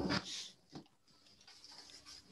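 A short, sharp breathy noise close to the microphone at the start, trailing into a brief hiss, then faint room tone.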